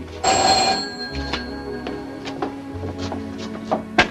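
A telephone bell rings once, a short loud burst near the start, over background music.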